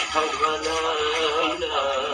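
Music with a man singing long, slightly wavering held notes.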